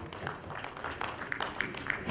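Audience applauding in a hall: an irregular scatter of fairly faint claps.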